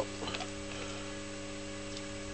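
Steady electrical hum with a stack of even overtones, from a rewound microwave-oven transformer supplying the HHO electrolysis dry cell at about 25 amps. A few faint ticks come about a quarter second in.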